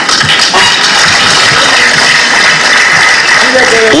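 Audience applauding steadily, with a man's voice coming back in near the end.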